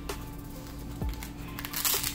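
Background music throughout; near the end, a short rasping rip as the Velcro strap of a slide sandal is pulled open.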